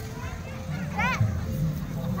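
Children shouting and playing outdoors, with one high call that rises and falls about a second in, over background music.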